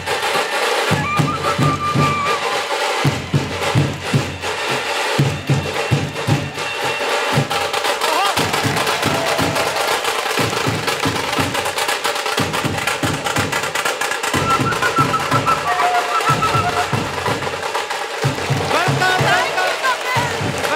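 Dhol drums beaten hard in a fast, driving rhythm with brief breaks between phrases, and curved tutari horns sounding a few long held blasts over them: a Maharashtrian ceremonial welcome band. A crowd cheers over the music.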